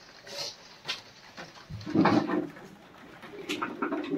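Pigeon cooing: a low call about two seconds in and a softer one near the end, with scattered light clicks and rustles.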